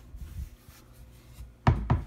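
Wooden pantry door being closed, ending in a sharp knock with a quick rattle near the end, after a quiet stretch.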